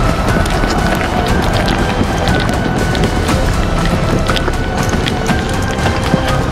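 Hurried running footsteps with the rustle and buffeting of a handheld camera being carried at a run, irregular crunching steps throughout, over a steady background music drone.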